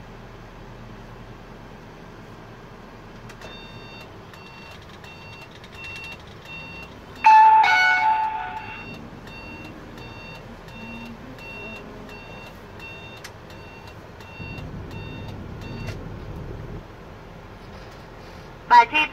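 Steady cabin noise of a slowly moving car, with a repeating electronic beep, two or three a second, that starts a few seconds in and stops about a second before the end. About seven seconds in, a loud tonal blare lasting about a second and a half is the loudest sound.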